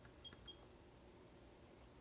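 Near silence broken by a few faint short beeps in the first half-second: key presses on a Siglent signal generator's keypad as a number is entered.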